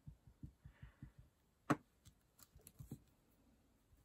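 Hands handling a wax crayon and a stencil on a craft table: scattered soft, low taps and knocks, a faint brief rubbing hiss about a second in, and one sharp click a little before halfway.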